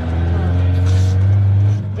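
A motor vehicle's engine running at a steady speed: a low, even hum that builds in loudness and then drops away just before the end.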